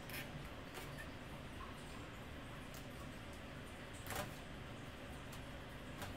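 A few faint, short scratches of a dull hobby-knife blade drawn through vinyl on a license plate blank, the clearest about four seconds in, over steady room hiss.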